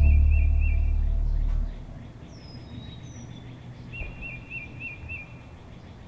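Birds chirping: a quick five-note warbling phrase repeated twice, with two short high downward chirps between. A low rumble underneath stops about two seconds in.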